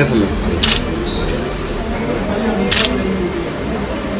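Two camera shutter clicks, about two seconds apart, over murmuring voices.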